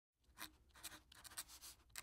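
Faint scratching strokes, about three a second, starting just after the opening.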